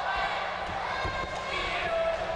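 Dull thuds of wrestlers' feet and bodies on a wrestling ring's boards and canvas, a few in quick succession, under the voices of a shouting crowd.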